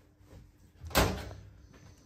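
A single sharp knock about a second in, a hard object struck or set down in a butchery room with steel worktops.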